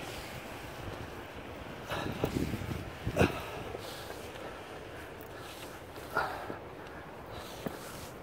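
Wind noise on the microphone, with a few scuffs and knocks as a climber moves over rock, one sharp knock about three seconds in.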